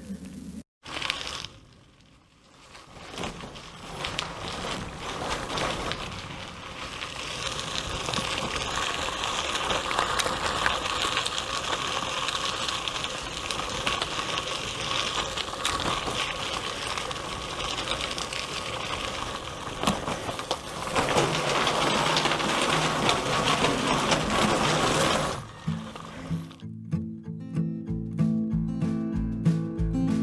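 Steady rushing and whirring of a bicycle riding along, tyres and wind, building up a few seconds in and cutting off near the end, where strummed acoustic guitar music begins.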